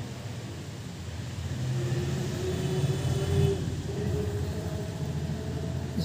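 Low rumble of a passing road vehicle, swelling about two seconds in, with a held tone in the middle and a fainter one near the end.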